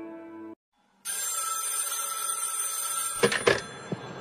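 The held last chord of a song, cut off about half a second in; after a brief silence a steady telephone-like ringing starts, broken off near the end by a few sharp clicks.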